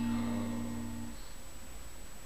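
Fender Telecaster electric guitar: one chord struck once, ringing for about a second, then cut off abruptly.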